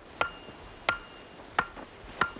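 Wooden boundary stake being driven into the ground with blows from an axe: three sharp strikes a little under a second apart, each with a brief ring after it.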